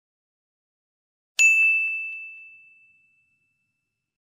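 A single high bell ding about one and a half seconds in: one sharp strike leaving a clear steady tone that rings out and fades over about two seconds.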